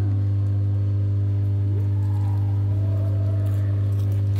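A steady low hum with even overtones, unchanging throughout, with a few faint brief rising pitch glides over it.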